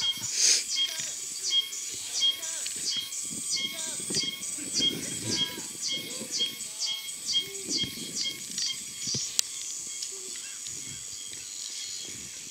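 High-pitched chirping calls from unseen wildlife, each one falling in pitch, repeating about three times a second and stopping about nine and a half seconds in. A single sharp click comes just before they stop.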